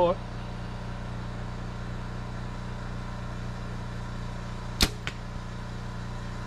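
A practice shot from a bow: one sharp snap about five seconds in, followed a quarter second later by a fainter knock. A steady low hum runs underneath.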